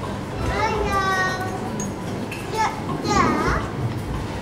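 Children's voices: a child calls out in a high, gliding voice twice, once just after the start and again about three seconds in, with other voices in the background.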